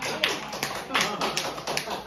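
A few scattered hand claps, about six sharp irregular ones, from a small audience as the music stops, with voices in the room.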